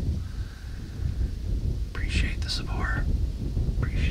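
A man speaking quietly, close to a whisper, from about two seconds in, over a steady low rumble.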